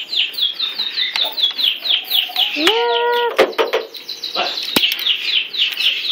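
Birds chirping in a rapid, even series of short, high, downward-sweeping chirps, about five a second. About halfway through comes one flat-pitched call lasting about half a second, then a few sharp clicks.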